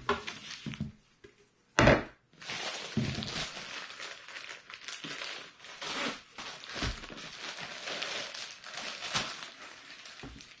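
A single sharp knock about two seconds in, then a plastic bag of flour tortillas crinkling steadily for several seconds as it is opened and tortillas are pulled out.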